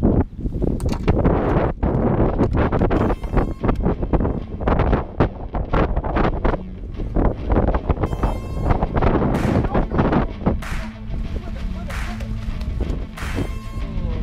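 Strong wind buffeting the microphone, with repeated knocks and handling bumps, and background music coming in under it.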